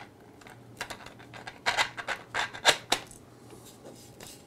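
Hard 3D-printed plastic parts clicking and scraping against each other as a freshly glued piece is pressed and fitted into place by hand: a run of irregular clicks, most of them between one and three seconds in.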